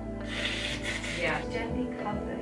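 A person blowing their nose into a tissue: one hissing blow lasting about a second, trailing off in a falling tone, over soft background music with sustained tones.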